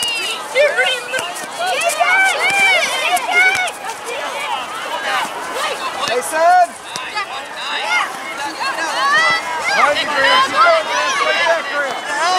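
Players and spectators at a youth soccer match calling and shouting over one another: a steady babble of overlapping, often high-pitched voices with no clear words.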